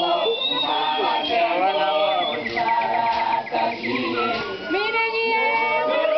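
Many voices singing together in traditional Swazi group song, their pitches overlapping and gliding. A high voice makes a rapid wavering trill about halfway through, and high held notes join near the end.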